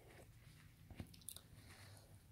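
Near silence, with a few faint clicks and crinkles a little under a second in and around the middle from paper napkins in their packaging being handled.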